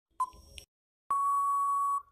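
Quiz countdown timer sound effect: a last short beep-tick just after the start, then a long steady beep of about a second signalling that time is up.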